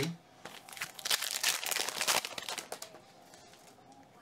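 A foil trading-card pack wrapper being torn open and crinkled: a run of rustling and crinkling starts about half a second in and lasts a little over two seconds, loudest in the middle, then fades to a few small rustles.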